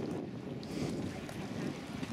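Wind buffeting the camera's microphone: a steady low rumble that swells and dips.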